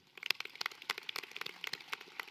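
An audience applauding: many hand claps, densest at first and then thinning to scattered claps.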